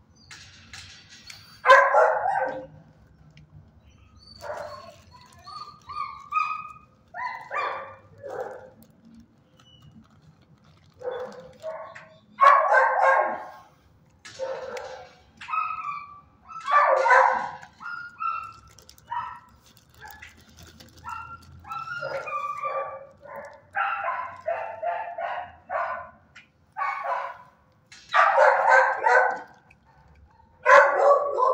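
Dogs barking in a shelter kennel, on and off throughout, with the loudest barks about two seconds in, twice in the middle and again near the end, and shorter, higher yips in between.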